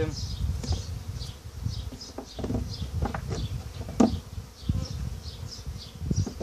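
Honeybees buzzing steadily around the hives, with a few short wooden knocks as frames are set into a wooden swarm trap box, the sharpest about four seconds in.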